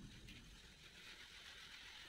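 Faint, steady hiss of a hand-pump pressure sprayer misting a dirt-dissolving cleaning agent onto fabric sofa upholstery, as pre-treatment before extraction washing.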